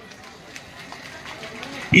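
A pause in a man's speech through a handheld microphone, leaving only faint, even background noise of the gathering; his amplified voice comes back right at the end.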